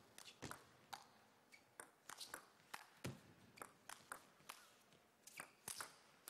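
Table tennis ball being struck back and forth in a rally, a string of sharp, irregular clicks off the bats and the table. A hard, loud crack of a powerful hit comes near the end.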